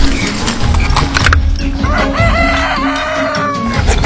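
Background music with clicks and knocks, and over it a drawn-out pitched call that bends up and down several times, starting about halfway through and lasting nearly two seconds.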